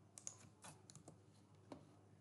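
Faint, irregular keystrokes on a computer keyboard, about seven light taps spread over two seconds.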